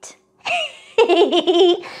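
A woman laughing in a put-on, mocking character voice: a brief laugh about half a second in, then a longer, quickly pulsing run of laughter.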